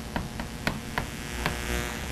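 Chalk on a blackboard while writing: about five short sharp clicks as the chalk strikes the board, irregularly spaced, over a steady low room hum.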